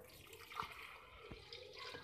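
Milk being poured from a cup into a glass blender jar, a faint splashing pour.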